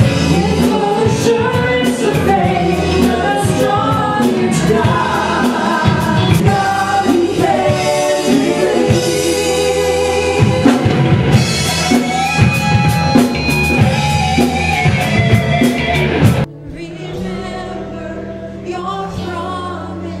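Worship band playing a song with singing and a drum kit. About sixteen seconds in the full band stops suddenly, leaving a quieter, softer accompaniment.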